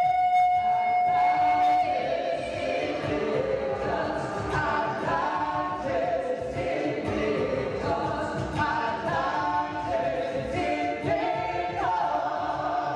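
Opera music with ensemble singing: a single note held for about two seconds, then several voices singing together over the accompaniment.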